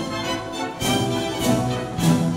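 Orchestra playing, with strings.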